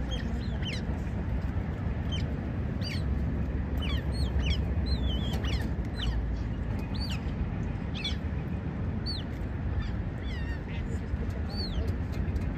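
Smooth-coated otters chirping: short, high-pitched, falling squeaks, several each second, over a steady low rumble.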